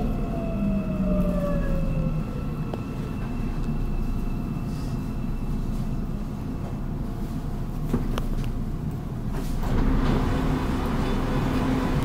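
Shinbundang Line subway train running with a steady low rumble, its motor whine falling in pitch in the first couple of seconds as it slows, and the running noise growing louder again near the end.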